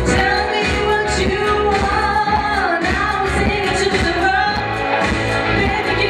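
A woman singing a pop song into a microphone over dance-pop backing music with a steady beat.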